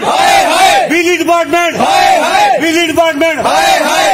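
Men shouting angrily in loud, raised voices, the shouts following one another without a break.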